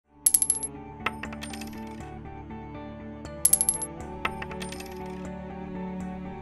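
Intro jingle: sustained music with two quick runs of coins clinking and dropping, one right at the start and another about three seconds in.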